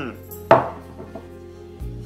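A white ceramic plate set down on a wooden table: one sharp clack about half a second in, then a couple of light clicks.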